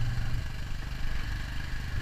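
Royal Enfield Himalayan motorcycle's single-cylinder engine running steadily as the bike is ridden.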